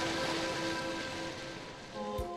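Soft background music: a few held notes sustained over a steady hiss, slowly fading.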